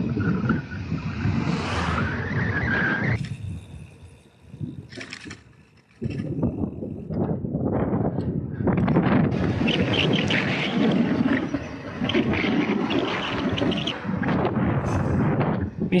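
Wind buffeting the microphone of a camera on a moving bicycle, mixed with the rush of tyres on asphalt, fading for a couple of seconds in the middle and then returning louder.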